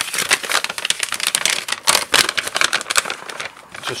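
Rapid, irregular clicking and rattling from a darkroom enlarger timer that has jammed and failed to switch off on time.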